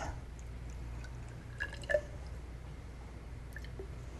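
Faint trickle of liquid poured from a plastic bottle into a glass test tube, with a couple of light ticks about two seconds in.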